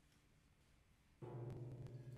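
A low guitar note starts abruptly after about a second of near silence and is held steady with its overtones, accompanied by a couple of faint clicks.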